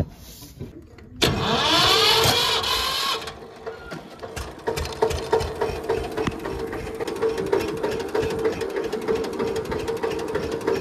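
Tractor engine started about a second in: a loud rising whine for about two seconds as it cranks and catches, then the engine runs steadily.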